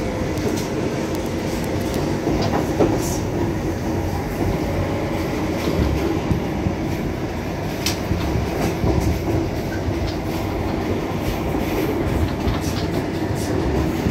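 Running noise of a GySEV Siemens Taurus electric locomotive and the coupled passenger coach, heard from the coach just behind the locomotive: a steady rolling rumble of wheels on rail with scattered sharp clicks and knocks from the wheels passing over rail joints.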